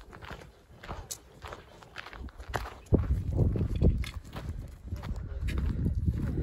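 Hikers' footsteps crunching on loose volcanic gravel and scree at an irregular walking pace. Wind buffets the microphone, growing louder about three seconds in.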